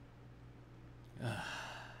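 A man sighs once, about a second in: a brief voiced start trailing into a breathy exhale that fades away.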